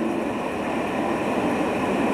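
Steady background noise in a pause of a man's speech, an even hiss-like rush with no distinct events.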